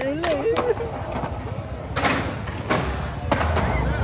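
Skateboard wheels rolling on concrete, with sharp clacks of the board striking, the loudest about two seconds in and another near the end, as a trick attempt fails. Voices are heard in the first second.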